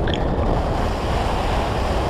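Steady rush of wind on the microphone of a camera mounted on a flying hang glider, in a strong wind.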